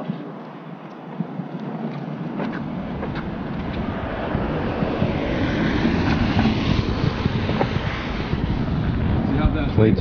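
A car driving past on a wet street: its tyre hiss builds to a peak about five to seven seconds in and then fades, over a low rumble.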